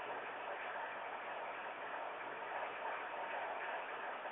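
Faint, steady hiss of a conference-phone line, cut off above telephone bandwidth, with no other distinct sound.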